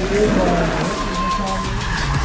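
Electric Tesla Model S rolling slowly past with only tyre noise on the asphalt, under background music.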